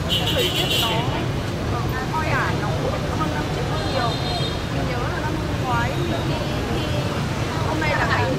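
A young woman talking over a steady low rumble of street traffic.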